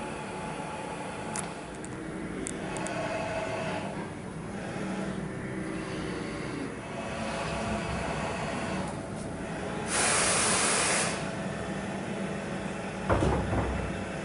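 Mitutoyo coordinate measuring machine moving its bridge and Renishaw PH10T probe head under joystick control: the axis drives whir, changing in pitch as the axes start and stop, over a steady hiss of air. About two-thirds of the way in a loud hiss lasts about a second, and a short thump comes near the end.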